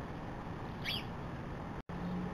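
A single short, high-pitched bird chirp about halfway through, over a steady hiss and low hum. The sound cuts out for an instant near the end.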